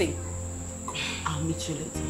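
Quiet background noise: a low steady hum under a continuous high-pitched whine, with a faint rustle about a second in.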